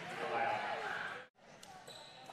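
Basketball game sound in a gym: crowd noise after a made basket cuts off abruptly at an edit a little over a second in. Quieter court sound follows, with a basketball bouncing.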